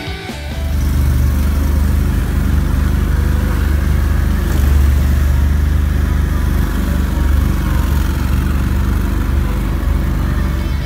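Amphibious all-terrain vehicle's engine running steadily under load as it drives through mud and marsh grass, starting about half a second in.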